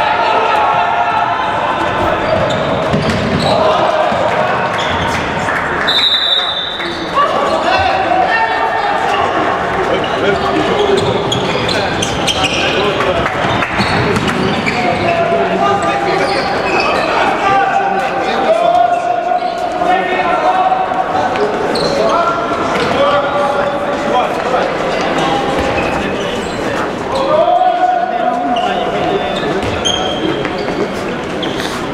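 A handball bouncing and slapping on a sports-hall court during play, with players and spectators shouting in the echoing hall.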